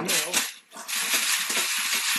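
Many empty brass pistol cartridge cases rattling and clinking as a hard-plastic shell sorter tray is shaken in a 5-gallon plastic bucket, sifting the cases by size. The rattle stops for a moment about half a second in, then runs on steadily.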